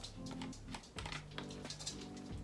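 Light plastic clicks and taps from handling a foam hair-dye bottle and its screw cap, over soft background music with steady held notes.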